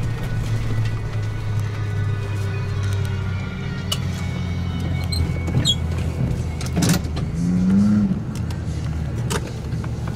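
A Class C motorhome's engine hums steadily inside the cab while driving. There is a sharp thump about seven seconds in, and just after it a short upward rise in pitch, the loudest moment.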